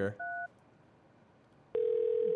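A short touch-tone keypad beep as a phone number is dialed, then about a second of near silence, then a steady telephone line tone starts near the end.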